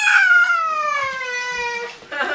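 A cat's long, drawn-out meow, one unbroken call sliding steadily down in pitch and stopping just before the end.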